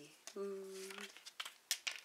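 A voice holds a brief steady hum at one pitch, then paper stickers crinkle with a quick run of sharp clicks and crackles as they are handled.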